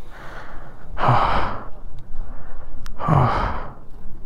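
Heavy breathing: two long, deep breaths out, about two seconds apart, from a person short of breath in the thin air at high altitude. There is a single small click between them.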